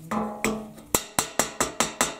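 Rawhide mallet tapping a wooden dowel tool set over a French horn rotor's bearing plate, driving the plate down onto the valve casing. A few spaced knocks, then from about a second in a quick, even run of taps, about five a second.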